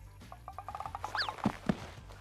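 Cartoon sound effects as a big bone is hauled out of mud: a quick run of small ticks, then a short whistle falling in pitch, and two soft thuds as the bone lands on grass.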